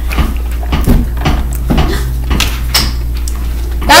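Scattered clicks and knocks with brief rustling, over a steady low hum.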